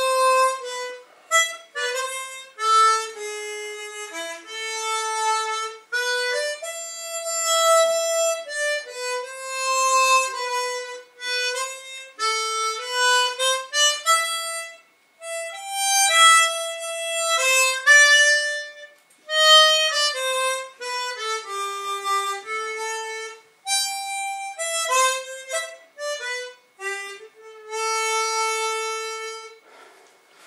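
Solo harmonica playing a slow single-line melody in phrases, some notes held long, with short breath gaps between phrases. The tune ends just before the end.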